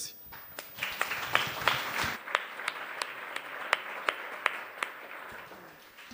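Audience applauding. The applause builds within the first second, is fullest over the next couple of seconds with a few sharp single claps standing out, and then slowly thins out toward the end.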